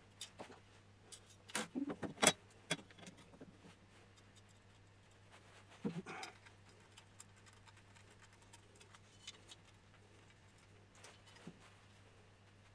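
Screwdriver and small metal parts of a 3D printer kit's frame clicking and clinking as a bolt is worked in by hand: scattered light clicks, with a cluster of louder knocks about two seconds in and another about six seconds in.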